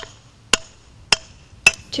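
A series of sharp, evenly spaced knocks, about two a second, each with a short ring.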